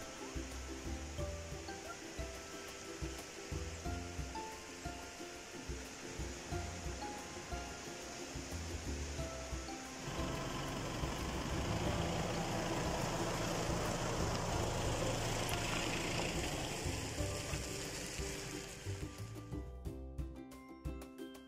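Background music, a melody of short steady notes. About halfway through, a louder hissing wash swells in under the music and fades out again near the end.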